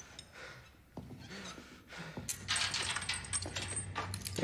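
A man panting faintly, with a sharp click about a second in, then a louder rattling, clinking noise from a little past two seconds.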